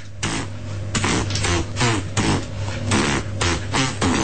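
Human beatboxing: a rhythmic run of mouth-made percussive clicks and hisses, about three beats a second, with short falling vocal sweeps between them.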